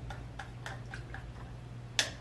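A paintbrush dabbing and tapping paint, heard as a few faint, unevenly spaced light clicks with a sharper click at the end, over a steady low hum.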